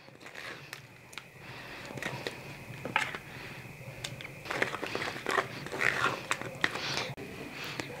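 A metal spoon scraping and tapping against a plastic strainer as thick ground chile is pressed through it to strain out the skins, in irregular wet scrapes and clicks.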